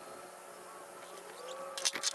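Quiet outdoor background with a faint, thin, slowly wavering hum, then a few sharp clicks and knocks near the end.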